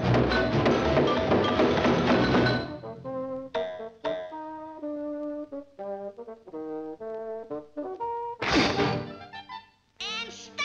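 Orchestral cartoon score with brass: a loud, dense noisy scuffle under the music for the first two and a half seconds, then short, separate brass and string notes, and one loud sudden swoosh of noise near the end.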